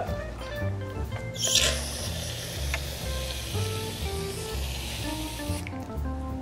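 Aerosol can of shaving cream spraying foam into a plastic measuring cup: a steady hiss that starts about a second and a half in and cuts off near the end. Background music with a steady bass line plays underneath.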